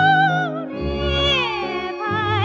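1948 Chinese popular song on a 78 rpm record: a female singer holds a high note with wide vibrato that ends about half a second in, then sings a phrase that slides down in pitch, over instrumental accompaniment.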